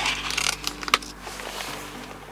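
A plastic lid being pried off a paper soup cup: a short crinkling rustle, then a single sharp click about a second in as it comes free.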